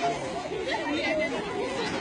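Several people's voices chattering and calling over one another.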